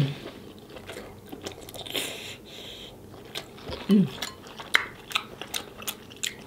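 Close-up chewing of a mouthful of sauce-covered seafood boil: wet smacking and many quick mouth clicks, with a brief hiss of breath or slurp about two seconds in. A short hummed "mm" of enjoyment comes near the four-second mark.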